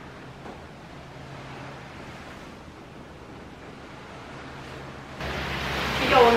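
Steady low hiss with a faint hum: quiet room tone. About five seconds in it gives way suddenly to a louder rush of wind and sea noise outdoors, with wind buffeting the microphone.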